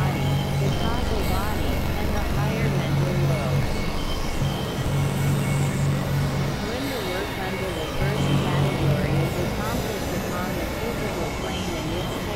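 Experimental synthesizer music: a low drone that cuts in and out in blocks of one to two seconds, under warbling, wavering tones and faint high sweeping glides.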